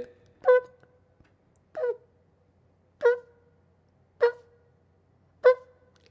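A man imitating a hospital heart monitor's beep with his mouth: five short beeps of one steady pitch, evenly spaced about a second and a quarter apart.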